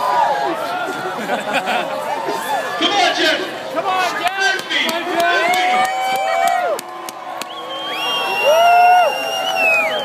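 A crowd of spectators cheering and shouting, with many voices overlapping and several long drawn-out calls, the loudest near the end.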